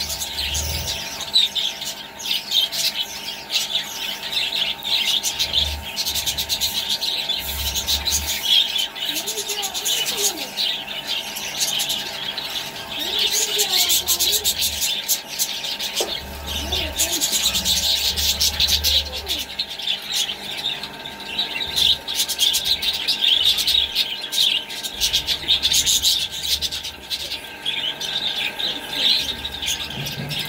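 A flock of budgerigars chirping and chattering in a dense, continuous chorus.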